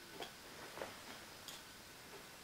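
Faint steady hiss with three soft, irregular clicks about two-thirds of a second apart.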